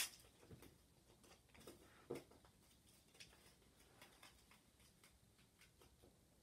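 Faint taps, clicks and light rustles of hands laying and pressing blue painter's tape along the edge of a card on a cutting mat. The sharpest clicks come at the very start and about two seconds in.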